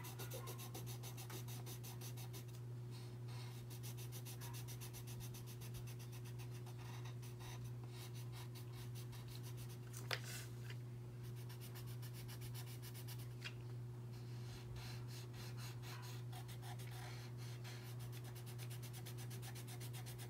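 Coloured pencil scratching on paper in rapid back-and-forth shading strokes, over a steady low hum, with one brief click about halfway through.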